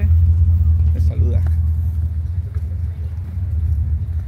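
Steady low rumble of wind buffeting the microphone on a moving small motorcycle, with the bike's running noise under it.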